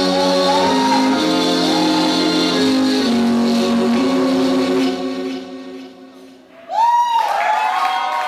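Performance music with long held notes fades out about five seconds in. Near the end a crowd breaks into loud cheering and shouting.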